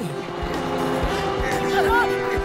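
Cartoon background music with a regular beat. About a second in, a steady motor-like whir joins it: the sound effect of the propeller helmet spinning up and lifting off.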